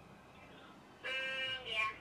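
Near silence, then about a second in a caller's voice over a phone speaker: a drawn-out "Um, yeah."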